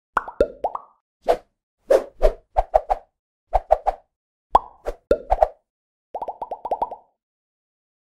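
Cartoon-style plop and bloop sound effects for an animated logo intro: short separate pops in small groups, some dropping in pitch and some rising, then a quick run of about eight pops near the end.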